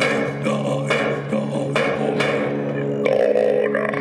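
Live experimental music: a steady low drone with a few sharp struck accents, from an amplified handmade string instrument and a vocalist at the microphone.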